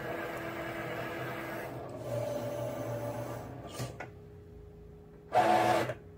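Cricut Maker cutting machine running steadily as it finishes cutting an iron-on transfer on its mat. The sound stops about four seconds in. Near the end comes a short, louder run of its rollers as the cut mat is fed back out.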